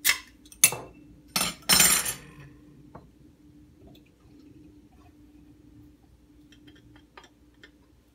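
Metal bottle opener prying the crown cap off a glass beer bottle: a few sharp clicks and then a longer burst as the cap comes off, all in the first two seconds. After that, stout is poured quietly into a glass.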